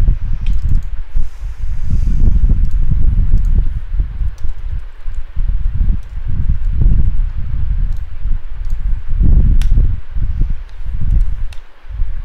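Uneven low rumbling noise on the microphone, with a few faint clicks from a computer keyboard as terminal commands are typed.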